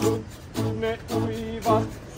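Acoustic guitar strummed in a steady rhythm, about two strokes a second, with a voice singing along.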